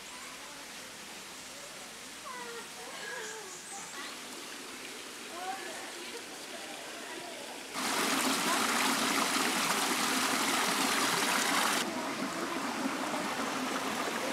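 Shallow creek water running and trickling over rocks. It comes in suddenly about halfway through, loudest for about four seconds, then continues more softly. Before it, faint distant voices.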